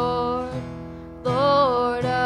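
Live acoustic worship song: a woman sings long held notes, the second entering just over a second in with a slight bend in pitch, over acoustic guitar and acoustic bass guitar.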